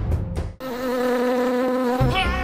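A run of sharp hits cuts off about half a second in. A steady buzzing drone on one low pitch then starts and holds, in the serial's added soundtrack.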